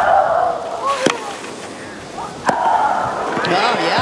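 Tennis rally on a clay court: a racket strikes the ball about every second and a half, each sharp pop followed by a player's short vocal grunt. Near the end the crowd noise starts to swell as the point is won.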